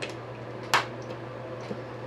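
A single short knock as a dancing-water speaker glass is set down on a wooden table, over a steady low hum.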